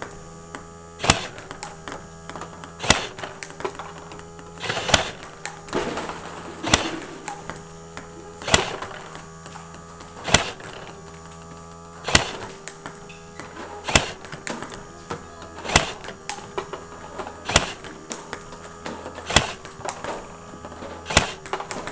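Table tennis robot feeding balls at a steady rate, with its motor humming throughout. A sharp click comes about every two seconds, and quicker, lighter clicks of the ball on the table and the player's bat fall between them.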